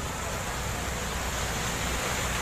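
Fast-flowing floodwater rushing across a street in a steady noisy rush, with a car wading through it.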